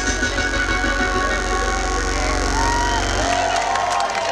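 Live synth-pop band playing through a large outdoor PA, heard from within the crowd, with held synth tones over a steady bass line. The bass drops out about three seconds in.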